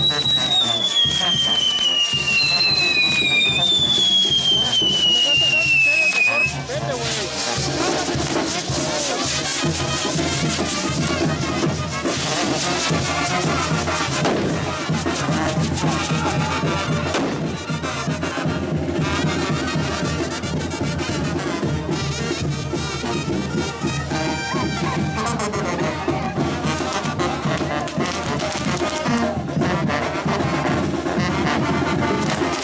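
Brass band music with fireworks crackling throughout. In the first six seconds two whistling fireworks give long falling whistles, the second starting as the first ends.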